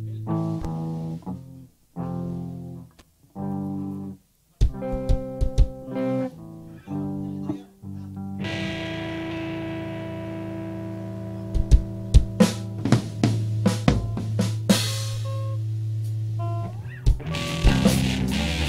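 Rock band playing live, guitars and bass with drums. For the first half it plays short chords with sudden full stops between them. Then it lets one chord ring on under drum hits and a cymbal crash.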